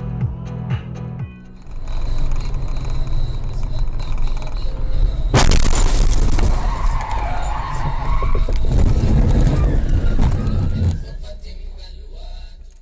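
A brief electronic music beat, cut off by loud rushing noise. About five seconds in comes a sudden sharp crash, and the loud noise continues until shortly before the end.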